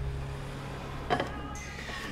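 A car engine idling, a low steady hum that dies away about half a second in. After it comes quiet room tone with a faint knock about a second in.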